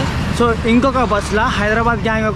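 A man talking, over a steady low rumble of street traffic.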